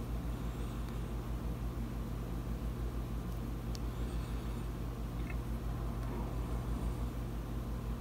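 Steady low background hum of room noise, with a faint click a little before the middle.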